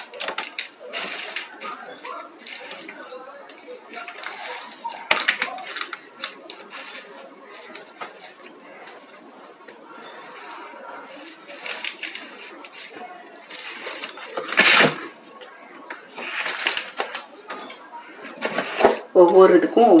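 Paper being handled during craft work: scattered short rustles and clicks, with one louder rustle about fifteen seconds in.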